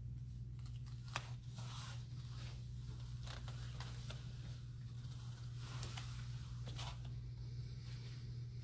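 Rustling and scuffing of cloth and bedsheets with a sharp click about a second in, as a person shifts and moves on floor mats, over a steady low hum.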